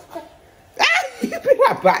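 Laughter in short bursts that rise and fall in pitch, starting loudly a little under a second in.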